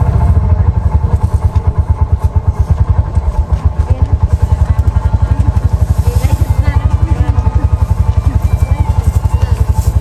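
An engine idling close by, a fast, even low pulse that does not change, with voices faint behind it.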